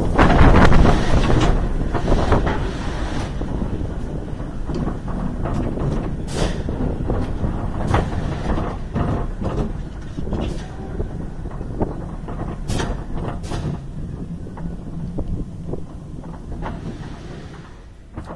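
Bolliger & Mabillard inverted coaster train (Talon) slowing to a crawl at the end of the ride. The wind and track rumble fade away steadily, with scattered short clunks and clicks from the train as it rolls in toward the station.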